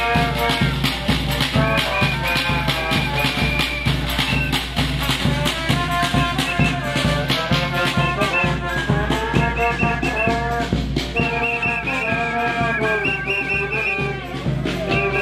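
Brass band playing a lively tune over a steady drum beat, with held horn notes on top.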